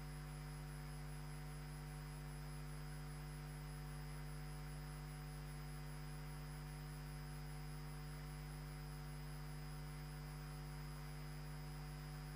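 Faint, steady electrical hum with a thin high-pitched tone above it, unchanging throughout.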